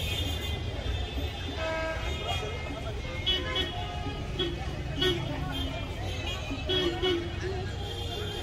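Busy city street traffic: a steady low engine rumble with car horns tooting in short, repeated honks, more often from about three seconds in.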